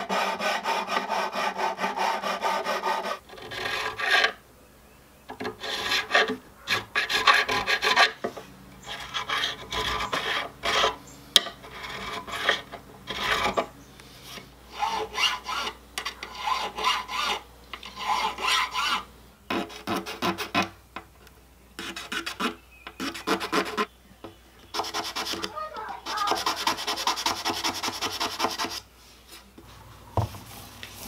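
Abrasive block and metal file scraping back and forth over the metal frets of an acoustic guitar during fret leveling and dressing. The first few seconds are one continuous run of rubbing; after that come short strokes in separate bursts with brief pauses between them.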